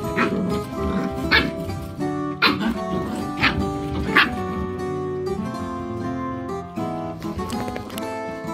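Border collie puppies yipping and barking as they play-fight, about four short sharp yips in the first half, over background music.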